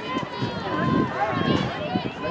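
Several spectators' voices talking and calling out at once, overlapping and indistinct, as runners pass.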